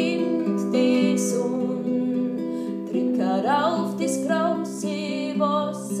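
A woman singing a slow song to her own nylon-string classical guitar, the chords ringing under long held notes that waver and slide in pitch.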